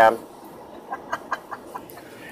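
Faint road noise inside a 2016 Nissan Pathfinder's cabin at highway speed, with a quick run of five or six short clicks about a second in.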